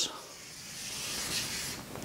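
Chalk drawn in one long downward stroke on a chalkboard, a steady hiss that grows louder about half a second in and fades just before the end.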